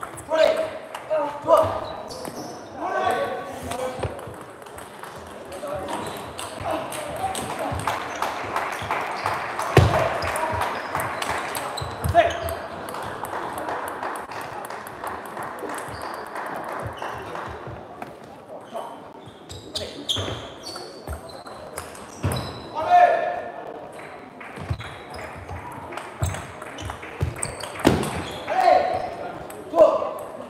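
Table tennis balls clicking off bats and tables, many light quick clicks from several tables at once, mixed with voices in the hall.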